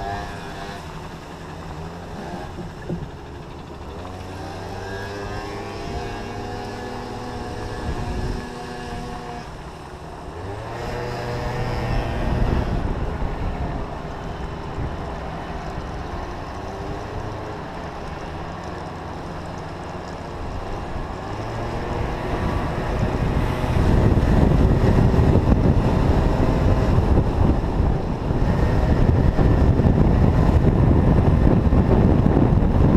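A Yamaha 50cc two-stroke scooter engine heard from the rider's seat, its pitch rising and falling as it moves slowly through traffic. From about two-thirds of the way through it runs louder and steadier at speed, with wind buffeting the microphone.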